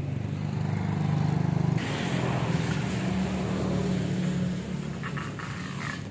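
A motor engine running steadily with a fast low pulse, loudest in the first two seconds, with a rushing noise joining about two seconds in and fading toward the end.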